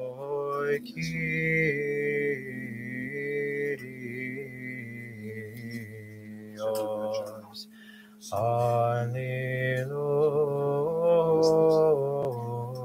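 Unaccompanied Orthodox liturgical chant: voices sing a slow melody of long held notes over one steady drone note that never stops. The melody breaks off briefly about two thirds of the way through while the drone holds, then comes back louder.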